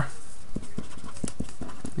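A run of light, irregular taps of a pen on a writing surface, about ten in two seconds, over a steady low background noise.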